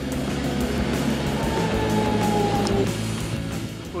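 City tram passing close by, the rumble of its wheels on the rails swelling to a peak about two to three seconds in, with a faint falling whine. Background music plays underneath.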